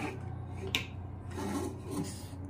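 Hands handling electrical wires and plastic switch and lamp-holder fittings: a light click at the start, another about three-quarters of a second in, then rubbing, over a steady low hum.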